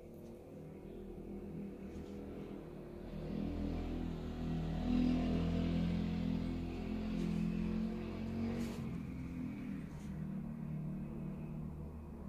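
A low motor hum that grows louder over a few seconds, holds, and then eases off again, with a few faint clicks near the end.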